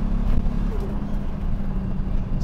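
Toyota Supra's turbocharged engine running at steady revs after a hard run, a constant low drone over road rumble.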